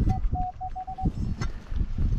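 A metal detector gives its target signal: a run of short, mid-pitched beeps over the first half as the coil sweeps across a buried target, a signal that sounds tight. Low rumbling runs underneath.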